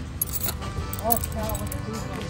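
A bunch of antique metal skeleton keys on a string jangling in a hand, in two short bursts of clinks.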